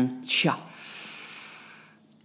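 A person's voice giving a short, sharp light-language syllable 'cha' about half a second in, followed by a long breathy hiss of an exhale that fades away.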